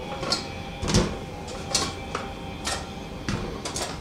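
Dishes and cutlery being handled at a stainless-steel kitchen sink: about eight sharp clinks and knocks at irregular intervals, some ringing briefly.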